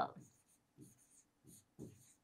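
A pen writing a word by hand on a board: a few short, faint scratching strokes.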